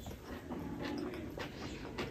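Close-up chewing of rice and curry with the mouth closed: wet mouth noises and a string of short smacking clicks.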